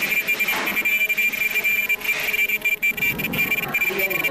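Steady high-pitched whine from a non-woven bag bottom welding machine, with rustling of non-woven fabric handled close to the microphone.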